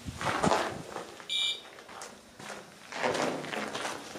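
A ghost-hunting sensor gives one short electronic beep about a second in. Before and after it come footsteps and rustling as the camera is moved.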